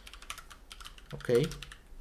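Typing on a computer keyboard: a quick, irregular run of keystroke clicks, with a short pause about halfway through.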